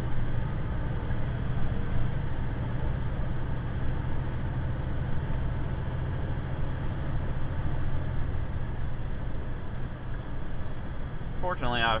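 Semi-truck diesel engine running steadily at highway speed, with a low hum and road noise heard from inside the cab.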